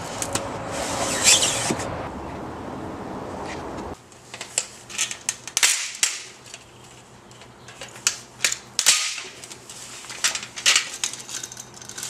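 Sharp, irregular clicks and snaps of a small hand tool prying apart the metal headrail of a mini-blind. Before it, about four seconds of steady noise with a couple of knocks.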